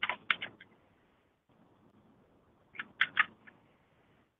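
Computer keyboard and mouse clicks in two short bursts of a few sharp clicks each, one at the start and one about three seconds in, as cells are copied and pasted between spreadsheet and software.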